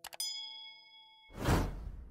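Animated subscribe-button sound effects: two quick mouse clicks, then a bright bell ding that rings for about a second, followed by a loud whoosh about a second and a half in.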